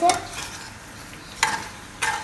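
Metal spoon stirring boiled pasta in an aluminium kadhai, with a sharp clink of the spoon against the pan about a second and a half in.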